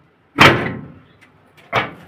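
Two loud, sudden thumps about a second and a quarter apart, the first the louder, each dying away within half a second.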